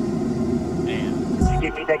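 Rap song playing: rapped vocals over a trap beat, with a deep 808 bass hit about one and a half seconds in.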